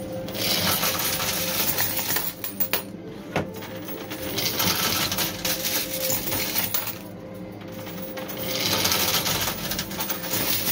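Quarters clattering and jingling in a coin pusher machine as coins slide and drop off the shelves. The clatter comes in three bursts about four seconds apart.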